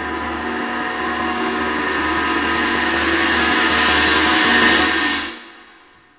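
Horror film score music: a dense, ringing cluster of many sustained tones swells louder and brighter, then cuts off suddenly about five seconds in, leaving a short fading tail.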